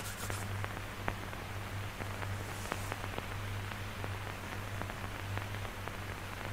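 Surface noise of an old 1946 educational film soundtrack: steady hiss and a low mains-type hum with scattered crackling clicks, about two a second.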